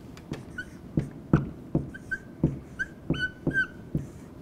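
Dry-erase marker writing on a whiteboard: a run of short strokes, several of them squeaking high, with the two longest squeaks near the end.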